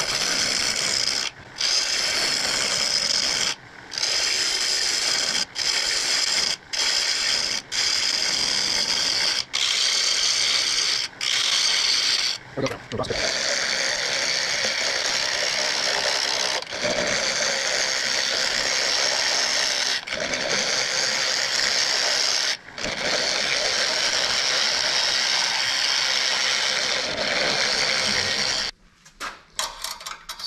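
A gouge cutting the face of a padauk blank spinning on a wood lathe at about 1000 rpm: a loud, steady scraping cut, broken by a dozen or so short gaps as the tool comes off the wood. The cutting stops shortly before the end.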